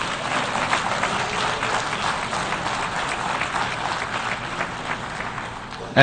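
Audience applauding: a steady round of clapping that eases a little near the end.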